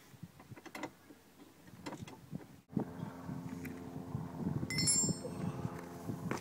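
Light clicks and clinks of a small hand tool working on the underside of a plastic Power Wheels toy Jeep. About halfway through a steady low hum sets in under further clicking, and a short high metallic ring sounds about a second before the end.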